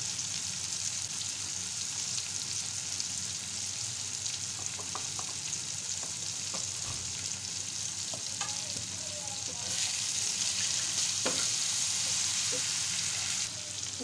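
Onion and tomato masala sizzling in hot oil on a flat iron tawa: a steady frying hiss that grows louder for a few seconds near the end, with a few faint clicks.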